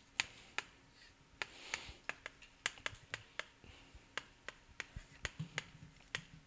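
Chalk writing on a chalkboard: a quiet string of sharp, irregular clicks as the chalk strikes the board, with short scratchy strokes between them as characters and lines are drawn.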